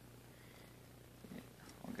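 Near silence with a low, steady electrical hum.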